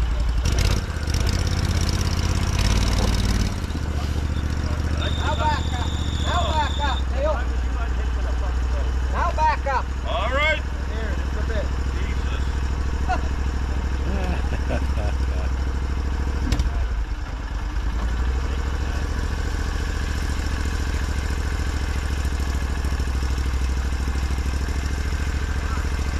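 An eight-wheeled amphibious ATV's engine running steadily at idle, a low drone throughout, just after being started. A single sharp click about sixteen seconds in.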